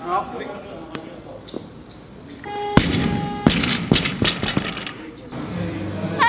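A loaded barbell with bumper plates dropped onto a lifting platform: one heavy thud about three seconds in, followed by a string of rebounding knocks and rattles, with voices in a large echoing hall around it.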